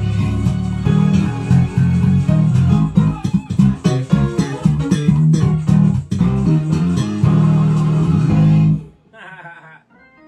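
Music with a prominent bass guitar line over sharp percussive hits, played loud and steady, then stopping suddenly just before the end.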